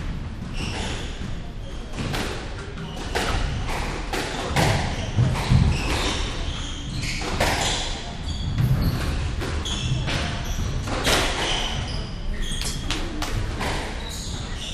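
A squash rally: rackets striking the ball and the ball hitting the court walls in a run of sharp knocks, with footsteps thudding on the wooden floor and short high squeaks in between.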